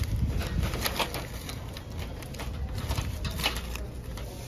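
A hand rummaging through a wire display basket of small wooden ornaments with paper tags: scattered light clicks and rustles, irregular, with a couple of sharper clicks about a second in and near the end.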